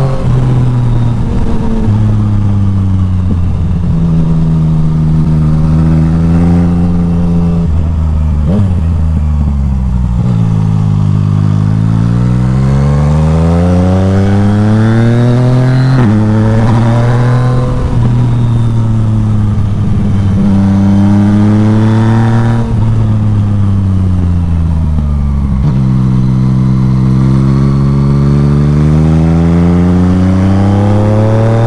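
Yamaha Tracer 900 GT's three-cylinder engine through an Akrapovic exhaust, ridden on the move. The engine note climbs in pitch under throttle, then drops back at each gear change or roll-off, several times over.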